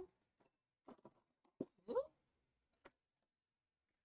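Scattered light taps and clicks of stencils and paper being handled and set down on a craft table. About two seconds in there is a brief, rising, voice-like sound.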